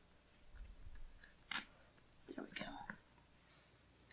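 Soft handling of paper stickers and washi tape on a planner page: light rustling and pressing, with one sharp tap or click about a second and a half in.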